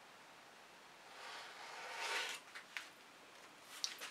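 A wide card dragged through wet acrylic paint across a canvas: a soft scraping swish that starts about a second in, swells for about a second and stops, followed by a few light clicks near the end.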